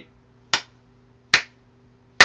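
Two sharp hand claps, about a second apart.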